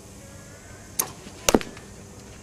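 Two sharp impacts about half a second apart: a pitching machine firing a baseball, then the bat striking the ball, which is the louder crack.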